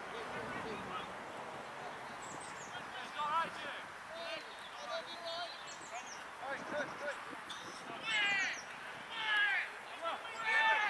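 Distant shouts of players calling out across an open football pitch: a series of short, separate calls, the loudest two near the end.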